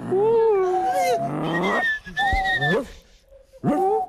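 A person's voice making long, wavering, wordless sounds, sliding in pitch and then holding a high note for about a second. It breaks off, and a short rising sound comes near the end.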